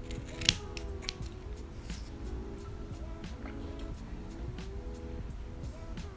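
Scissors snipping through a bundle of synthetic braiding hair: several sharp cuts, the loudest about half a second in, over quiet background music.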